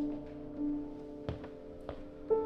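A 150-year-old C. Bechstein grand piano played softly: held notes fading away, then two soft knocks in the second half.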